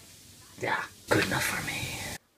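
A person's breathy vocal sounds: a short one about half a second in, then a longer, louder one from about a second in.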